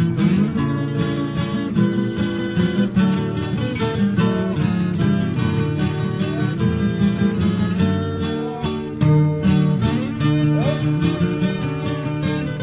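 Acoustic guitar music, plucked and strummed at a steady pace.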